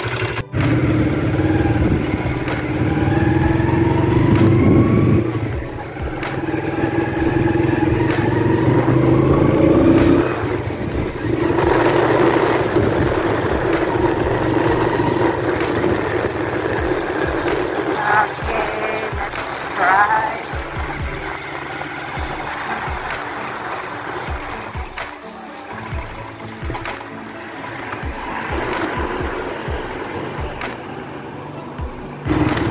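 Honda Sonic 125 motorcycle's single-cylinder engine running on a test ride on its newly fitted carburetor, with pitch rising and falling through the first half. Background music plays over it.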